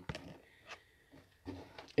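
Quiet pause with faint room tone and a few faint clicks, near the start and just under a second in.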